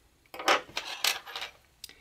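Metal scissors and a steel tapestry needle set down on a wooden tabletop: a few light metallic clinks and rattles over about a second, then a single small click near the end.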